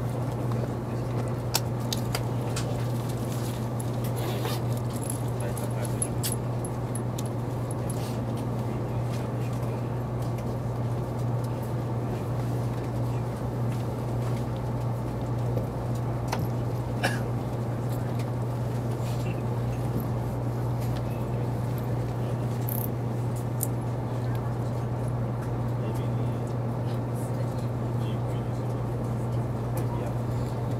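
High-speed rail station platform ambience: a steady low hum under a faint background wash, with indistinct voices and a few scattered clicks.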